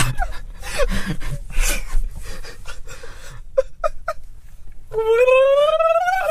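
A man laughing: breathy, wheezing bursts of laughter, a few short voiced yelps, then, about five seconds in, a long high-pitched vocal sound that rises steadily in pitch.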